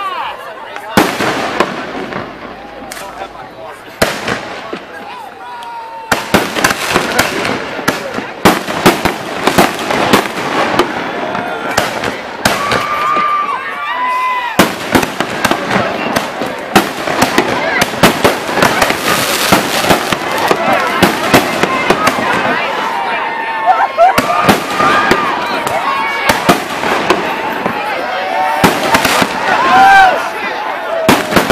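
Aerial fireworks bursting: a few scattered bangs at first, then from about six seconds in a dense, nearly continuous run of bangs and crackling.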